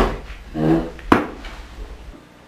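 A single sharp wooden knock about a second in, over a low room hum.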